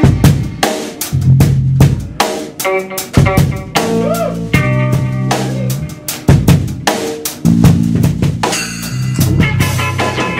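Live rock band improvising: a Yamaha drum kit playing a busy pattern of snare and bass-drum hits, with electric guitar and bass guitar notes sounding between the strikes.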